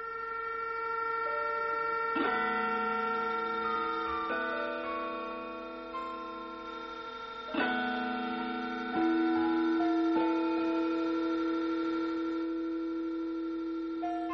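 Improvised music of layered, steady held tones, like electronic drones, with no beat. The chord of pitches shifts abruptly about two seconds in, again around four, seven and a half, nine and ten seconds. It is loudest from about nine seconds on, when a strong low tone enters.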